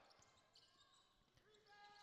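Near silence: faint court sound of a basketball being dribbled on a hardwood floor, barely audible.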